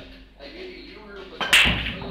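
Blackball pool break shot: about a second and a half in, the cue ball smashes into the racked balls with a loud crack, followed by the balls clattering and rolling across the table.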